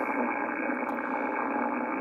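HF band noise from a Yaesu FTdx5000 receiver's speaker, tuned to 3.856 MHz on the 80-metre band in lower sideband. It is a steady, rough, gnarly hiss filling the voice passband with no signal in it. The owner traces it to power-line noise.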